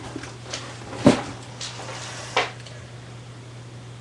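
A few sharp knocks and light handling sounds, the loudest about a second in and another near two and a half seconds, over a steady low hum.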